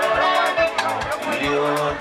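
Live Kenyan Mugithi band music: guitar and bass lines over a steady drum beat, with a voice singing or calling out over the band.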